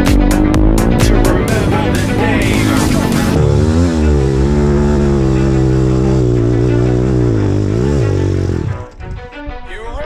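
Background music with a driving beat, moving into a long held, wavering pitched passage that drops away suddenly about nine seconds in.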